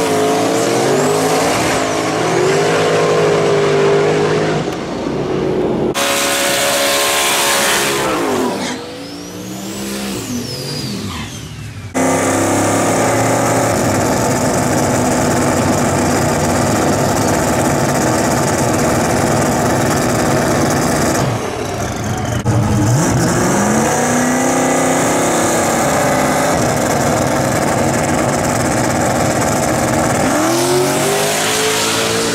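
Turbocharged LS V8 drag car at full throttle in several short cut clips: the engine pitch climbs as it launches and pulls away, and there is a long steady high-rev stretch at the start line during a burnout.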